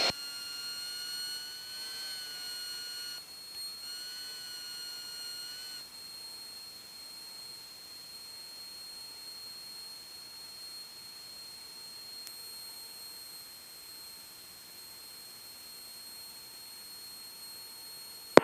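Faint, high-pitched electrical whine with overtones in a light aircraft's headset intercom audio. It wavers about two seconds in, breaks off briefly near three seconds and fades out about six seconds in, leaving a faint steady high tone and hiss. The engine itself is not heard.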